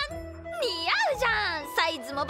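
A character's high, excited voice exclaiming over light background music with steady held notes.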